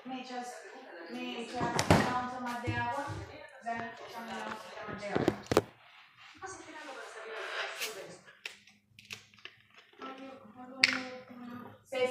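Background talking, with a little music, broken by a few sharp knocks and taps about two seconds in and again around five seconds in.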